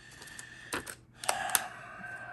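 A few light clicks and taps of handling as the paper wrap is taken off a bare 2.5-inch laptop hard drive, three short clicks in the second half, the last the loudest.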